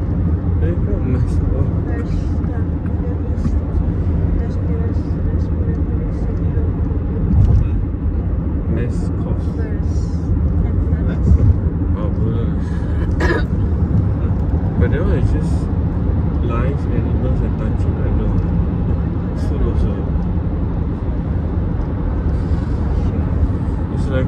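Steady low rumble of road and engine noise inside a moving car's cabin while it drives at speed.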